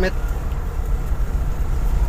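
Steady low rumble of a car's engine and road noise, heard from inside the cabin while driving slowly.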